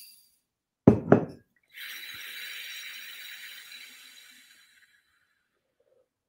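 Two sharp knocks about a second in, typical of a glass jar being set down on a table. Then a long whooshing exhale through pursed lips, as if through a straw, lasting about three seconds and fading out: the slow out-breath of diaphragmatic belly breathing.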